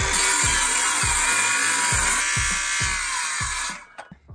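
Cordless DeWalt circular saw running at speed and cutting through a wooden board, a steady high whine with the rasp of the blade in the wood, stopping suddenly near the end.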